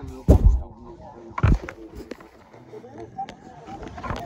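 Two dull knocks from the recording phone being handled and moved, one about a third of a second in and a louder one at about a second and a half, with faint voices in the background.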